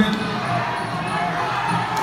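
Ringside noise at a Kun Khmer kickboxing bout: the crowd over the beats of the traditional ringside music's drums.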